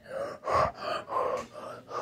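A person's repeated gasping breaths, about two a second.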